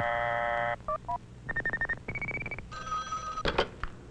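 Telephone call sound effects: a brief steady buzzing tone, two quick touch-tone beeps, then three short warbling ring tones, each higher or lower than the last. Together they stand for a call set up by dialing just two digits and ringing through.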